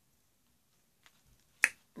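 A pause in speech, near silent apart from a few faint ticks, broken near the end by one sharp mouth click.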